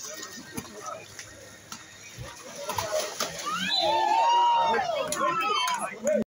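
A biribol rally in a pool: water splashing with a few sharp slaps on the ball, then from about three and a half seconds in several players and spectators shouting loudly over each other.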